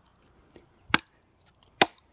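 Hatchet chopping into a small piece of kindling on a wooden chopping block: two sharp knocks about a second apart.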